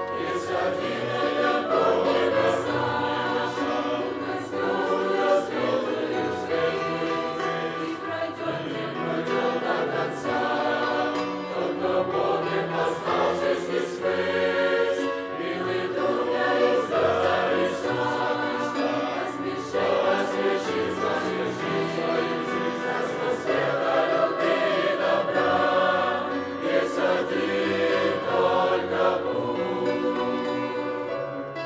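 Mixed youth choir of men's and women's voices singing a hymn together.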